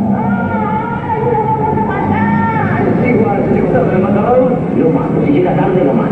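Voices from a film soundtrack played over a large hall's sound system, echoing, with music underneath.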